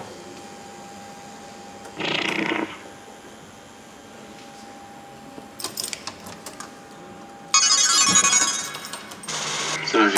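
Alien pinball machine playing electronic game sounds: a faint steady tone, a short burst about two seconds in, a few clicks, then a loud, high electronic effect for under two seconds near the end.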